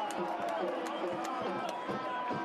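Men's voices talking and shouting over stadium crowd noise, with a few sharp clicks or claps.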